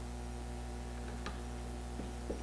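Steady low electrical hum from a microphone and PA system, with one faint click a little past one second in.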